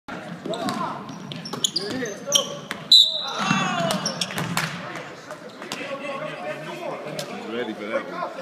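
A basketball bouncing on a hardwood gym floor during play, with sneakers squeaking and voices shouting across the court.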